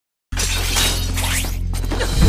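A brief silence, then a sudden shatter-like sound effect over a low steady bass tone, its high crackle thinning out near the end.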